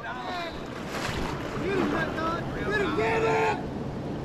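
Steady rush of river water, with voices calling out partway through.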